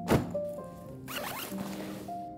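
A thump just after the start, then a zipper pulled quickly along, most likely a fabric packing cube's zip, over background music with a stepped melody.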